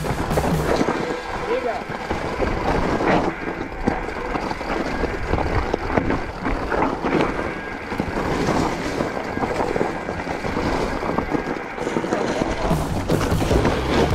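Background music laid over the noise of a mountain bike riding down a loose, rocky gravel trail: tyres on stones and the bike moving over rough ground, with no pauses.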